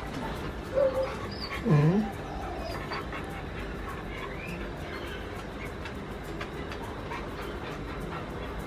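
Siberian husky vocalising briefly: a short pitched sound about a second in, then a louder one whose pitch drops low and rises again, followed by steady low background noise.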